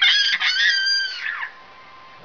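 A toddler's high-pitched squealing laugh that bends up and down in pitch and trails off about one and a half seconds in.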